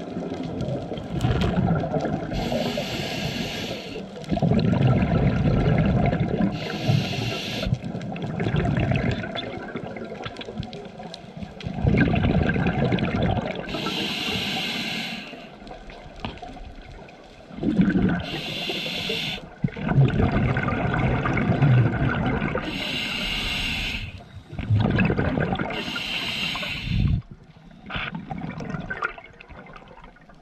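Scuba diver breathing through a regulator underwater: six short hissing inhalations through the demand valve, each followed by a longer bubbling rumble of exhaled air, in a steady cycle every four to five seconds.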